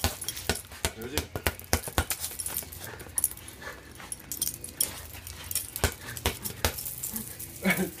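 Small dog playing with a toy, making faint dog noises among many quick clicks and scuffs.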